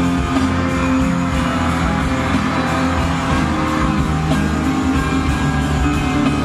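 Live band music playing loud and steady, recorded from the audience in the concert hall.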